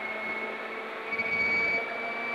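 Hyundai i20 R5 rally car's 1.6-litre turbocharged four-cylinder engine pulling hard in fifth gear at about 165–175 km/h, heard from inside the cabin as a steady drone whose pitch creeps up slightly about a second in.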